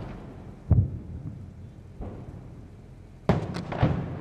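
Distant artillery shell exploding: one deep boom about a second in, trailing off in a rumble. A cluster of sharper knocks follows near the end.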